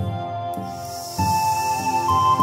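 Native American flute music over a steady low beat of a little under two pulses a second; a breathy hiss swells in about half a second in, and a clear high flute note begins a little past one second in.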